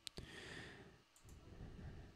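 Near silence, broken right at the start by two quick clicks at the computer as the commit goes through, followed by a faint breath.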